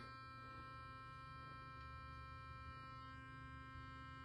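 Burst sonic electric toothbrush running its two-minute cleaning cycle, held in the air rather than in the mouth: a faint, steady buzzing hum.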